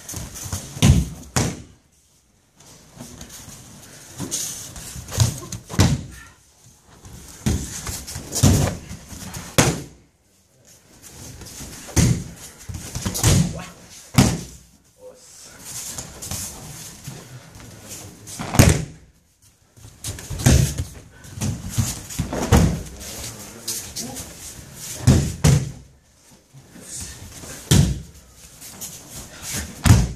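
Bodies slamming onto tatami mats as partners are thrown and break their falls, about ten heavy thuds a few seconds apart.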